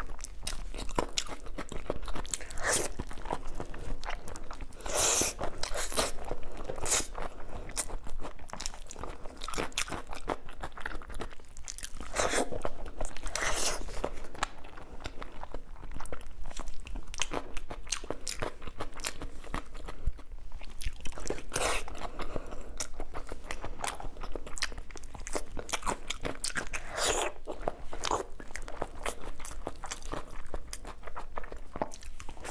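Close-miked eating sounds: biting and chewing sauce-glazed braised pork, a steady run of sharp wet clicks with a few louder bites spread through.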